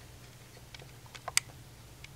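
A quick run of several light clicks about a second in, ending in one sharp, louder click.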